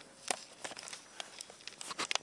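Soft rustling with scattered light clicks and taps: handling noise as a handheld camera is moved about and things are shifted on a desk.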